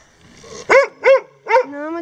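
A dog barking three times in quick succession, each bark short and sharp.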